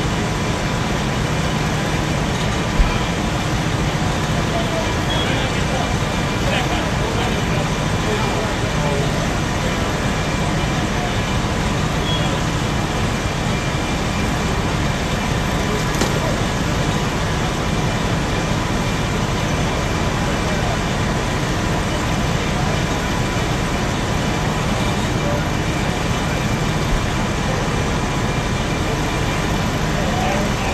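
A parked fire engine running steadily, a constant loud drone with faint steady tones in it, and indistinct voices underneath. A single sharp knock about three seconds in.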